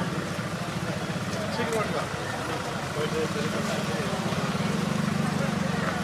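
A vehicle engine running steadily at idle, a low even hum, a little louder in the second half, with people's voices faintly in the background.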